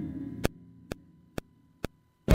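Metronome count-in clicks from the Akai MPC X SE: four short, evenly spaced ticks, a little over two a second, counting in a recording pass. The tail of the previous keyboard notes fades out in the first half second.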